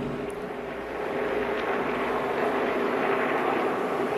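A pack of NASCAR Sprint Cup stock cars running at speed, their V8 engines blending into one steady drone that swells slightly about a second in.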